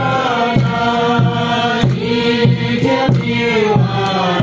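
A group of people singing a hymn together from hymn books, holding long notes, with a steady beat about every two-thirds of a second.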